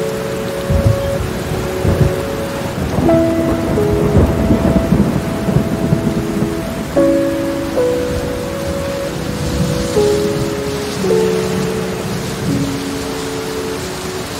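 Steady heavy rain with rumbling thunder, the rumble swelling most about four to five seconds in. Slow sustained music notes, shifting every second or two, play over the storm.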